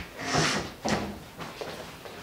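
Wooden wardrobe door being handled: a short scraping rush as it swings, then a sharp knock just under a second in as it shuts.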